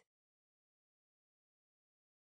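Silence: a digital gap with no sound at all.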